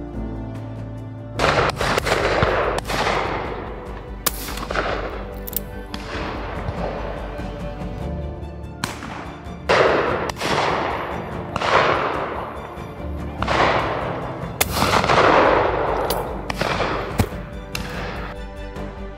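A string of about fifteen shotgun shots at irregular spacing, some close together in pairs, each trailing off in a long echo. Background music plays underneath.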